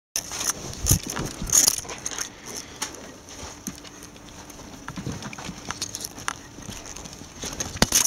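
A ferret and a hand scuffling on couch upholstery: irregular taps, scratches and rubbing, with a couple of louder thumps in the first two seconds.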